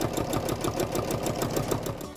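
Electric sewing machine stitching through fabric, a fast, even run of needle strokes, roughly ten a second.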